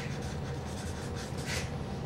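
Marker pen writing on flip-chart paper: a run of short scratchy strokes as a word is written, with one louder stroke about one and a half seconds in.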